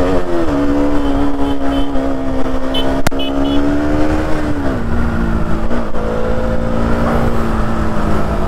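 KTM Duke 200's single-cylinder engine running at a steady cruise, its revs easing down slightly about halfway through. There is one sharp click a little after three seconds.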